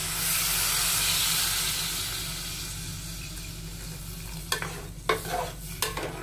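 Water poured into a hot pot of frying dry-fish curry masala, sizzling loudly at first and dying down over a few seconds as it is stirred with a spoon. A few clinks of the spoon against the metal pot near the end.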